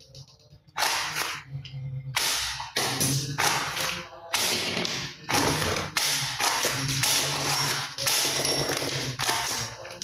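Plastic toy guns clattering and clicking as they are handled and worked, in repeated rattling bursts each up to about a second long, starting about a second in.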